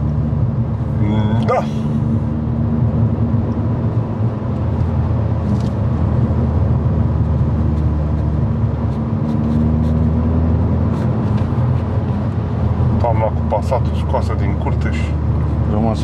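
Cabin sound of a Volkswagen Golf Mk5 GTI Edition 30 with its 2.0-litre turbo four-cylinder pulling along at low speed: a steady low drone of engine and road noise.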